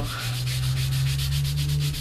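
A baby wipe rubbing color quickly back and forth over strips of masking tape, as a rapid, even run of short scrubbing strokes.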